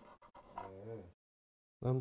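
A few light knife clicks on a wooden cutting board as a tomato is diced, then a brief low murmur from a man's voice about half a second in.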